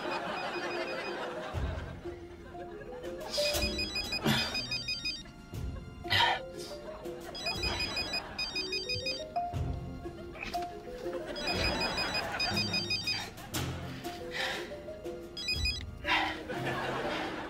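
Mobile phone ringing: a high, rapidly pulsing ring repeated about every four seconds, over background music.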